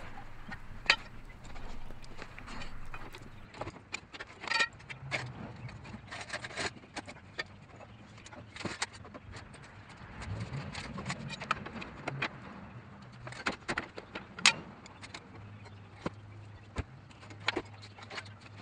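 Scattered metallic clinks and knocks of tools and parts as a manual transmission is pried off its dowel pins and worked down onto a floor jack under a car, over a low steady hum.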